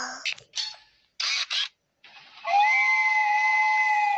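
Two short clicks, like a toy camera's shutter, then, about two and a half seconds in, a long steady held tone that lasts to the end.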